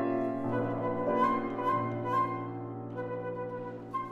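Flute and grand piano playing chamber music together: the piano's sustained chords sit underneath while the flute plays held notes above.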